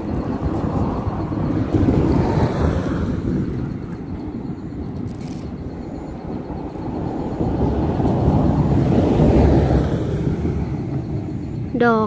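Wind buffeting the microphone: a low rushing noise that swells in gusts, strongest about two seconds in and again toward the end.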